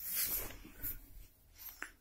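Soft rustling handling noise of a handheld phone and camera being moved, loudest in the first half second, with a few fainter rustles after.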